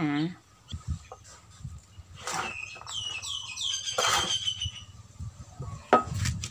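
A bird calling: a quick run of high chirps, each falling in pitch, from a little under three seconds in to nearly five. Two short rustling noises come through about two and four seconds in.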